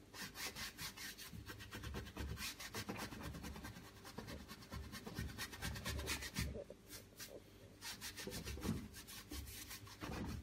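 A bristle brush scrubbing and dabbing fairly dry black acrylic paint onto a stretched canvas, in quick, repeated, scratchy strokes.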